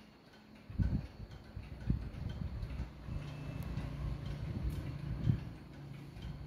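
Mechanical pendulum wall clock ticking, with a few dull low thumps about a second in, about two seconds in and near the end.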